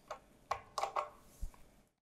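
Fingers working the safety pin off a Condor MDR5 air-compressor pressure switch: a few faint, small plastic clicks and taps. The sound cuts out near the end.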